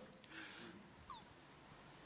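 Near silence: room tone, with a faint short chirp gliding down about a second in.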